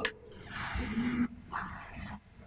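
Soft breaths close to a microphone, with a brief low hum about a second in.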